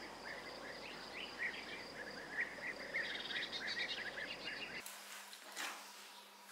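Outdoor rural ambience: many short bird chirps over a steady background hiss. After about five seconds it cuts abruptly to a quieter scene with a brief scraping sound.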